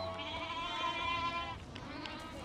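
A single long, wavering bleat from herd livestock, lasting about a second and a half.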